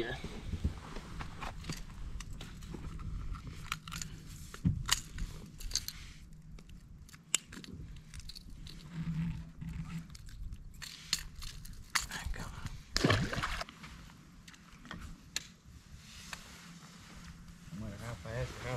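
Scattered clicks, knocks and rustles of a small caught fish being handled and unhooked with pliers on a boat deck, with one louder burst about two-thirds of the way through.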